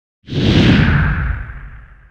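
Whoosh sound effect for a logo reveal: a loud rushing swoosh with a deep rumble underneath, starting about a quarter second in, then sinking in pitch and fading away over about a second and a half.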